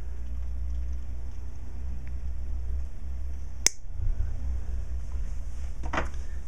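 One sharp snip about two-thirds of the way in: diagonal cutters cutting through thin 0.010-inch music wire, over a steady low hum.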